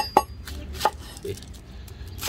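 Cleaver chopping red onion on a wooden beam: a few sharp knocks of the blade going through into the wood, two in quick succession at the start and another near the middle.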